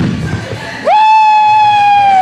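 A man's long, high-pitched yell of strain during a heavy lift, rising at the start, held on one pitch for over a second, then falling away. A short sharp knock sounds just before it at the very start.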